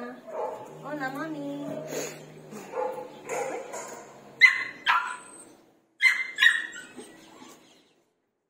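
A dog whining, then short, sharp barks in two pairs, about four and a half and six seconds in.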